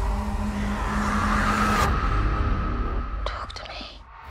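Trailer sound-design swell: a loud, dense rumble with a held low tone and a hiss that builds, then cuts off about two seconds in, the rumble dying away after it. A whispered voice near the end.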